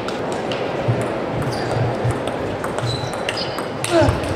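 Table tennis rally: the celluloid-type plastic ball clicking sharply against the bats and the table many times, with a louder hit right at the end, over steady hall background noise.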